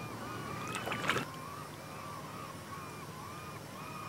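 Birds calling over and over in a steady chatter of short notes, over a low steady drone, with a brief louder burst about a second in.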